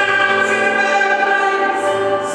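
Woman singing blues, holding a long note into a microphone, over a keyboard accompaniment.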